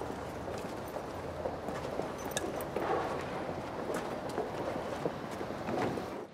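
Footsteps on a pavement, a few faint scattered steps over a steady background noise of the street.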